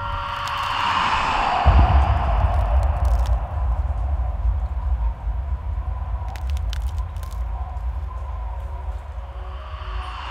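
Title sound design: a falling whoosh, then a deep low rumble with a few sharp cracks scattered through it, slowly fading away.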